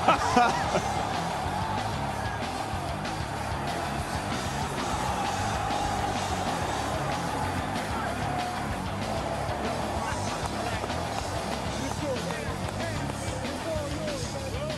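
Music playing over the steady noise of a large stadium crowd cheering, with a short laugh right at the start.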